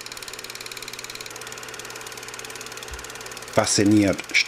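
Steady mechanical rattle of a running film projector, very fast even ticking, about two dozen a second, over a low hum.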